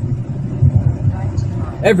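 Steady low rumble of a car's engine and tyres on the road, heard from inside the cabin while driving.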